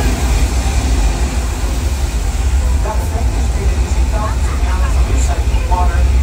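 A staged flash flood: a torrent of water rushing and churning down a paved street, a loud steady rush with a deep rumble underneath.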